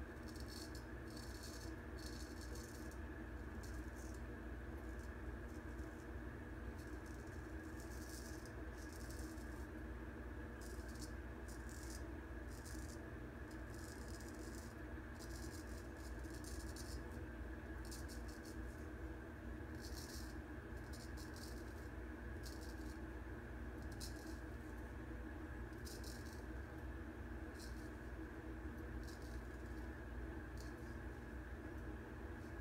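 Straight razor scraping through lathered beard stubble in short strokes, a crackly rasp repeated irregularly in little runs, over a steady low hum. This is the first rough pass through the beard.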